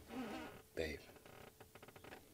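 A short, quiet wordless vocal sound in two soft pieces within the first second, followed by faint scattered clicks.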